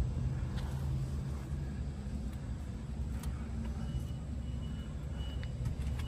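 A steady low mechanical hum, like a motor running in the background, with a faint thin high tone coming and going in the second half.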